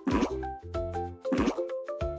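Light, cheerful children's background music with plucked notes, with a cartoon 'plop' sound effect just after the start and another about a second and a half in. The plops mark an on-screen countdown.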